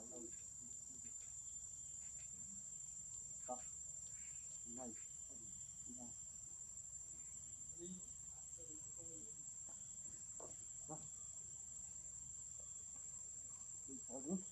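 Faint, steady, high-pitched drone of insects, with faint distant voices now and then underneath.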